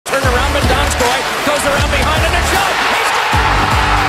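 Intro music with a heavy bass beat, with a voice over it.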